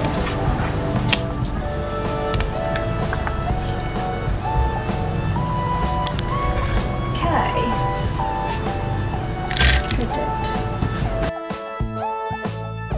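Background music with a melody of held notes stepping up and down. The music changes abruptly about eleven seconds in.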